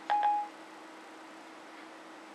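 iPhone 4S Siri's short electronic beep about half a second long, signalling that it has stopped listening to the dictated message. A faint steady hum follows.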